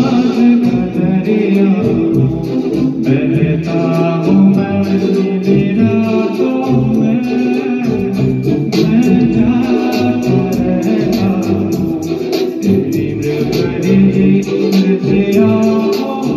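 A man singing a Hindi film song into a microphone through a PA, over backing music with guitar and a steady beat.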